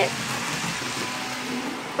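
Model train running on its tabletop track loop: a steady, even running noise with no clear rhythm.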